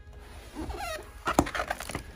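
Glossy pages of a large hardback photo book being turned by hand, with a sharp paper snap about halfway through.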